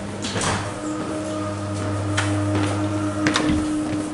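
Automatic double swing door's operator motor running with a steady hum, with a few sharp clicks.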